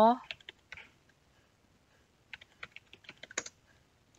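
Computer keyboard typing: a few scattered keystrokes, then a quick run of about a dozen keys in the second half as a word is typed.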